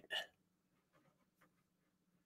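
Near silence: faint room tone with a low steady hum, after one short faint vocal sound just after the start.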